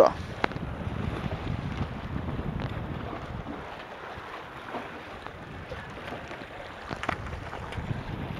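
Wind buffeting the microphone over the wash of surf on jetty rocks, with one sharp click about half a second in.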